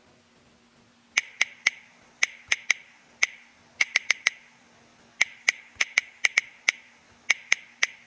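Key-press clicks from a phone's on-screen keyboard while a short message is typed: about twenty crisp clicks in quick runs of two to four, each with a short ring.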